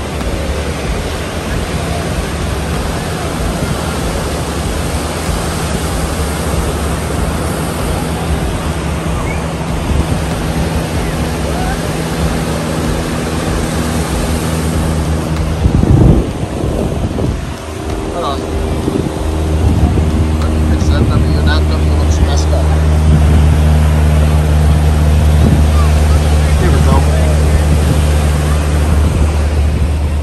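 Wind buffeting the microphone over the rush of surf, with a steady low engine-like drone underneath. The drone grows louder after a brief loud knock about halfway through.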